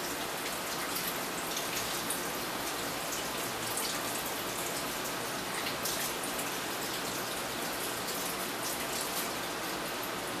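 Kitchen tap running steadily into the sink as hands are washed under the stream, a constant splashing hiss.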